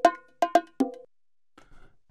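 Sampled bongo loop played back in the Punch 2 drum plugin: a few sharp, pitched bongo hits that stop about a second in.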